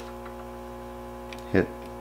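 Steady electrical mains-type hum with a stack of even overtones, between strokes of chain filing.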